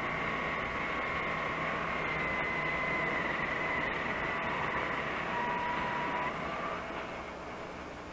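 Steady hum and rumble of sugar-mill machinery with a faint whine holding two pitches, easing slightly near the end.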